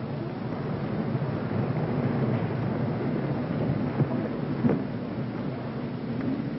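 A large audience rising to its feet in a hall: a broad, even rumble of shuffling and rustling that swells over the first couple of seconds and then holds, with a couple of brief knocks about four seconds in.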